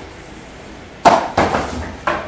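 Cardboard packaging being handled: a sharp knock about a second in, followed by a few smaller thumps as a cardboard insert is pulled up out of the shipping box.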